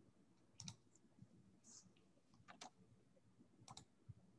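Near silence, broken by three faint pairs of sharp clicks.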